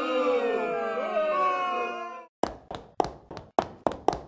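Sound-effect crowd booing, then about six rapid splats of thrown tomatoes hitting in quick succession in the last second and a half.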